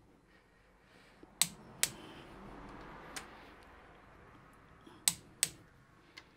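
Sharp metallic clicks from hand tools on wheel hub bolts: a close pair of clicks about a second in and another near the end, with faint handling noise between.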